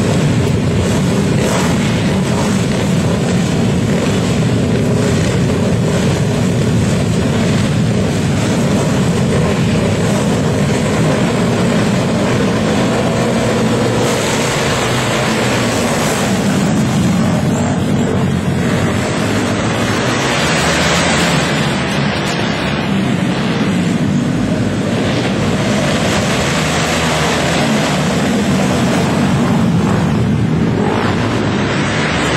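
Flat-track racing motorcycle engines running loud and without a break, their pitch rising and falling as the throttles open and close.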